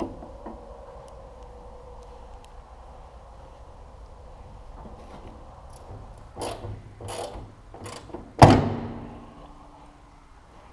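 Sheet-metal corn head snouts being handled: a few faint clicks, then a run of knocks and rattles from about six seconds in, ending in one loud clang that rings out for about a second.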